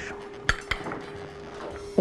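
A metal spoon clinking twice against a glass dish, about half a second in.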